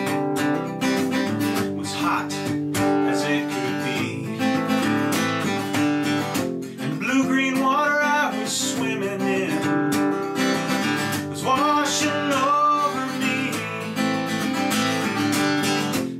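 Acoustic guitar strummed in a steady rhythm, with a man singing over it.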